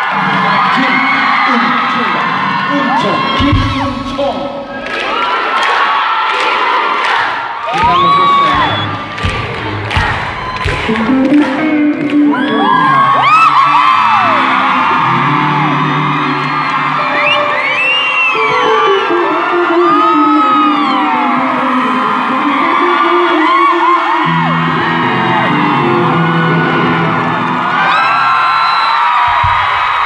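Electric guitar solo, with hard accented hits in the first ten seconds, over a crowd of fans screaming and cheering throughout.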